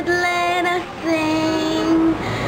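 An 11-year-old girl singing, holding long steady notes; one phrase ends just under a second in and a new note is held through to the end.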